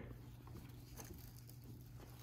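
Near silence: a low steady room hum with a couple of faint soft ticks.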